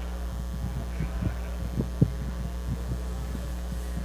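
Steady low electrical hum on the recording, with scattered soft low knocks and thumps, the loudest about two seconds in.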